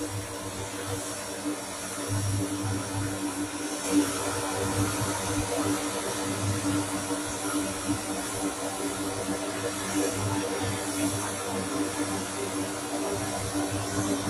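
Lockheed C-130J Hercules turboprop engines running on the ground with the propellers turning: a steady drone with a constant low hum, a little louder from about two seconds in.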